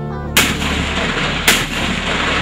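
Two explosion blasts about a second apart, each starting with a sudden loud bang and trailing into a long rushing rumble. Background music plays underneath.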